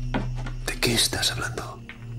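A person whispering a few breathy words, over a low steady hum.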